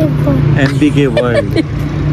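Voices talking over a steady low mechanical hum.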